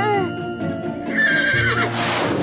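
Cartoon horse whinny sound effect for a winged unicorn: a wavering high call about a second in, over background music.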